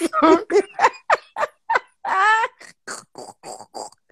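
Hearty laughter in a rapid run of short bursts, with one longer, drawn-out high laugh about halfway through.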